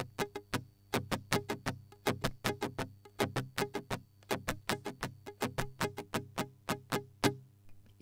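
Nylon-string classical guitar strummed in a quick, even rhythm of short, crisp strokes, about five a second, played as a strumming-pattern demonstration. The strumming stops shortly before the end.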